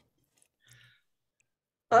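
Near silence on a video-call line, with one faint, brief sound a little under a second in. A woman's voice begins just before the end.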